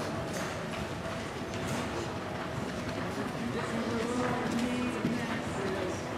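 Horse's hoofbeats on the dirt footing of an indoor arena, under steady background voices.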